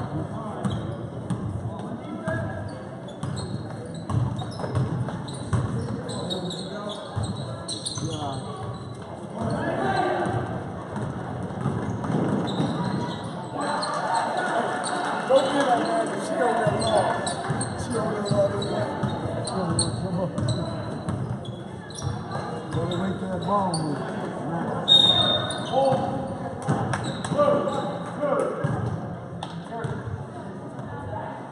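Basketball game in a gym: a ball bouncing on the court, players' shoes and calls, and spectators talking and shouting, echoing in the hall.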